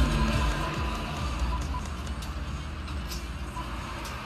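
FM radio music playing through the car's speakers from an aftermarket Android head unit, fading away within the first second as the volume drops. After that, only a steady low rumble and hiss remain.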